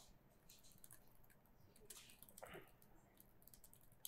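Faint, irregular keystrokes on a ThinkPad laptop keyboard as a short shell command is typed.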